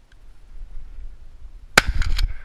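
Shotgun fired near the end: one very loud sharp report, with a second sharp crack about half a second later, after a low rumble of the gun being shouldered.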